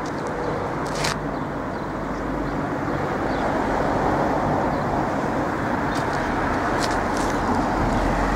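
Road traffic noise: a steady rush of tyres and engine that swells gradually over several seconds and then holds. A brief click comes about a second in.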